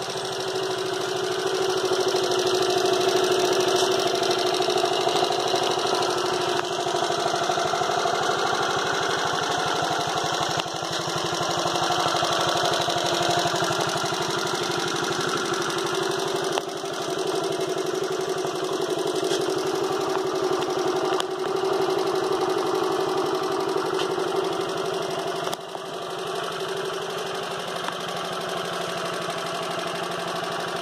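1967 Honda Z50M mini bike's small single-cylinder four-stroke engine idling steadily on its stand, a fast even putter.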